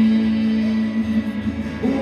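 A live rock band plays a guitar passage with a steady held note under the chord and no singing, from the electric and acoustic guitars on stage.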